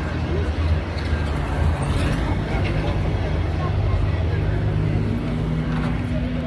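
City street traffic noise with a vehicle engine running nearby, a steady low drone, joined by a second steady hum near the end.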